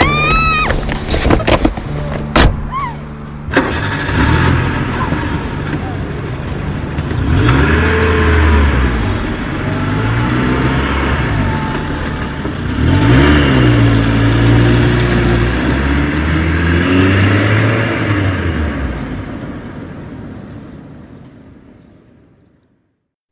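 A few sharp clicks, then a car engine starts suddenly about three and a half seconds in and runs, its pitch rising and falling a few times as it revs, before fading out near the end.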